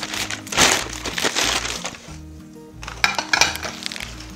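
Paper wrapping crinkling and rustling in irregular bursts as it is pulled off and pushed aside, with a quieter lull in the middle, over soft background music.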